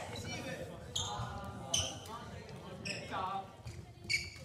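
Gymnasium sounds during badminton play: indistinct voices in a large hall, with three short, sharp sounds of play on the courts about a second apart.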